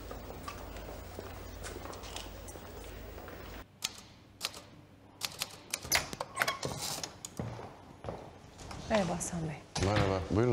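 Manual typewriter keys clacking in short, irregular runs of sharp strikes, after a steady low background hum that cuts off abruptly.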